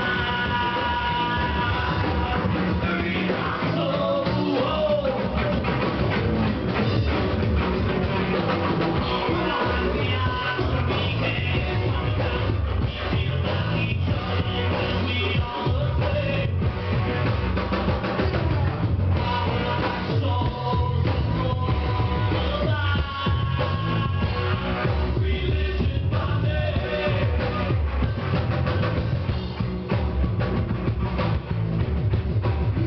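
Live rock band playing, with a singer over electric guitar and drum kit.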